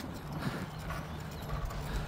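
Footsteps on brick pavement, a faint irregular clip-clop of shoes on hard paving.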